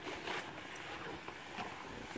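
Faint rustling with a few small clicks: clothing and rope gear being handled as a harnessed child is lowered on a rope.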